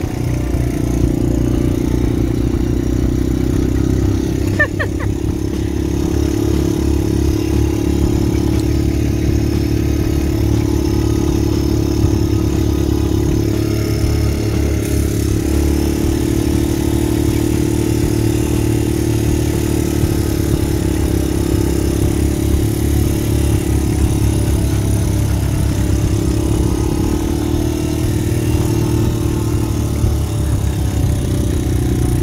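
Honda quad bike (ATV) engine running steadily under way across soft sand, heard from the rider's own seat, with a deep rumble and a steady drone.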